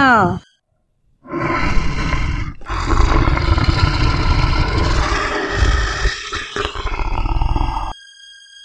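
Lion roaring, a sound effect: a short roar about a second in, then a longer one lasting about five seconds.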